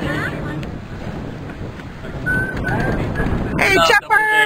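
Steady rushing wind noise on the microphone with people's voices in the background, and a voice speaking louder near the end.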